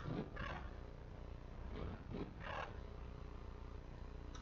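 Two soft breaths into a close microphone, about two seconds apart, over a low steady electrical hum.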